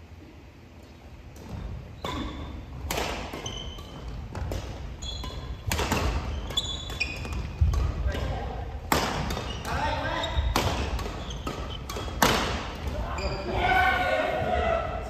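Badminton rackets hitting shuttlecocks in a run of sharp smacks, several louder ones ringing on in a large gym hall, mixed with short sneaker squeaks on the wooden court floor.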